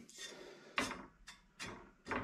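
Steel Mini doorstep repair panel being picked up and handled on a workbench: a few light metallic knocks and scrapes.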